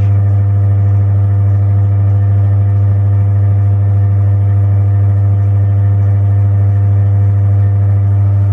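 Milling machine running with its spindle turning: a loud, steady electric-motor hum with an even set of overtones.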